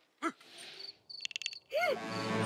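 Animated night-time ambience: a cricket chirping in a rapid high trill about a second in. A short gliding sound comes near the start and a louder arching glide near the end.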